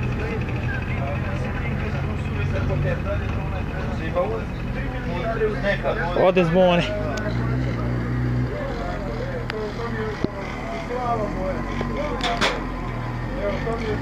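A motorcycle engine running steadily at low revs, with people's voices talking over it now and then.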